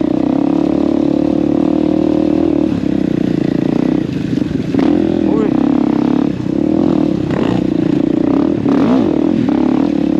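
KTM enduro motorcycle engine running while riding. Its pitch rises and falls with throttle changes several times in the second half.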